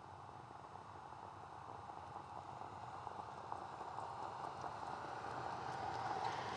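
Steady racetrack noise of the harness field and the mobile starting-gate truck approaching, growing slowly louder.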